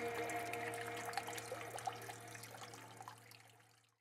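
Faint trickling and dripping water, fading out to silence shortly before the end, while the last held notes of music die away.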